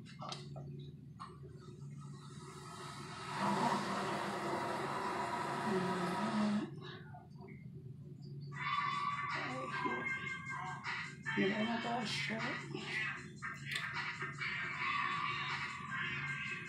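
Music and speech playing in the background, like a television. A hiss runs from about three seconds in until nearly seven seconds.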